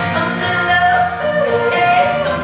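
Live country-folk band music: a woman singing lead over acoustic guitar, banjo and electric guitar, with a percussion beat about twice a second.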